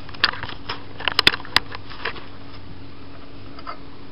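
A few sharp clicks and knocks, the loudest bunched about a second in, over a steady low hum.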